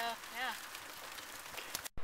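A girl says a short "yeah" over a steady hiss of outdoor background noise, which cuts off suddenly just before the end.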